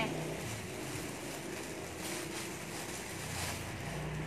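Faint rustling of plastic-wrapped clothing being handled and searched through, over a steady background hiss.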